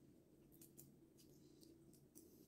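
Near silence with a few faint, crisp clicks of a cooked prawn's shell being peeled apart by hand.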